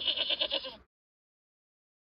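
A goat bleating once: a single wavering bleat that cuts off a little under a second in.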